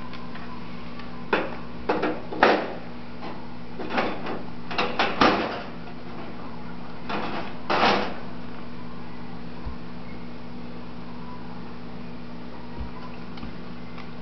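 Metal wire dish rack in a pulled-out kitchen drawer rattling and clinking in short bursts as a toddler handles it, about eight times in the first eight seconds, over a steady low hum.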